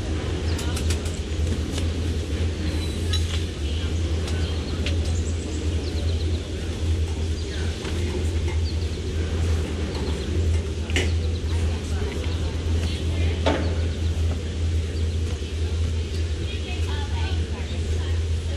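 Sea Ray Sundancer's MerCruiser 7.4 L inboard V8 idling at dead-slow, a steady low rumble.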